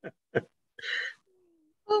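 A person's laughter trailing off in two short laugh pulses, followed about a second in by a breathy exhale and a brief faint hum.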